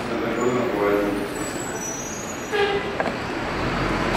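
Quiet, indistinct voices murmuring around a meeting table over steady room noise, with one short, louder utterance about two and a half seconds in.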